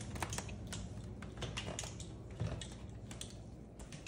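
Irregular light clicks and taps of a Moluccan cockatoo's claws on a hardwood floor as it walks.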